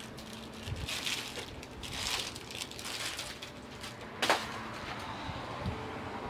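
Faint handling noise of a large TV being swung on a full-motion wall-mount arm, with one sharp click about four seconds in.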